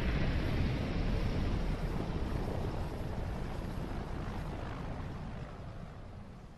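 Steady drone of propeller aircraft engines and rushing wind from the anime's soundtrack, cutting in suddenly as the music stops and slowly fading out.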